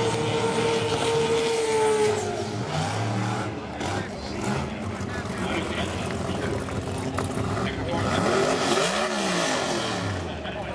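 Drag car engine held at high, steady revs during a burnout with the rear tyres spinning, then dropping off about two seconds in. A brief rise and fall in engine pitch follows near the end.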